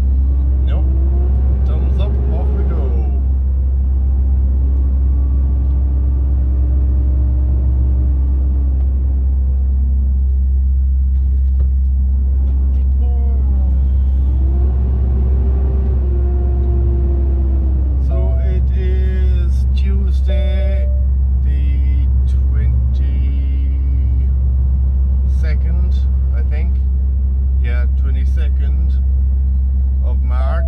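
Vehicle engine heard from inside the cab while driving: a steady low drone underneath, with the engine note rising, holding and falling as the vehicle accelerates and slows. A voice comes and goes in the second half.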